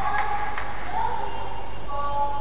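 Indoor badminton arena between rallies: a few short squeaking tones, near the start and again about a second in, over a steady hall background with faint voices.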